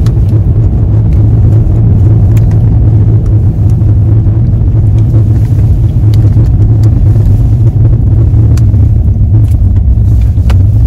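Steady low rumble inside a car's cabin with the car running, with a few light clicks over it.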